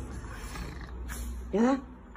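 A short, rising vocal sound about one and a half seconds in, over a low steady hum.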